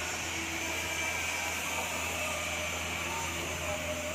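Steady outdoor background noise, a low hum under a constant hiss, with faint voices in the distance.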